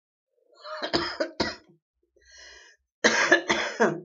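An older woman coughing in two bouts, the second louder and in quick strokes, with a short breath between. The coughing is brought on by the vapour of a sub-ohm vape, which she says makes her cough, her eyes stream and her nose run every time.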